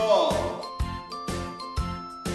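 Instrumental backing music with a tinkling, bell-like melody over a steady beat. A held sung note falls away just at the start.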